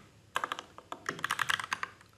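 Typing on a computer keyboard: a quick run of keystrokes that starts about a third of a second in and goes on until near the end.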